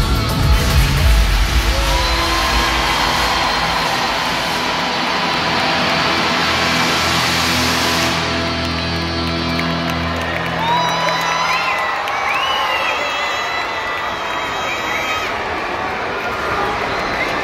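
Live concert music from an arena sound system ending on long held chords over a cheering crowd of children; the music stops about ten seconds in, and the children's shouts and whoops carry on.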